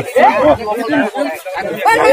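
Several men's voices talking over one another in lively chatter, with a short lull in the middle.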